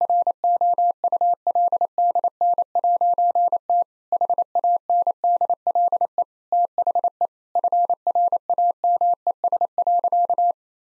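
Morse code sent at 28 words per minute: a single steady beep keyed on and off in dots and dashes, with short gaps between words. It spells the punchline 'It couldn't handle the frames.'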